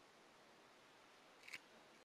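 Near silence: a faint steady hiss, with one short faint click about one and a half seconds in.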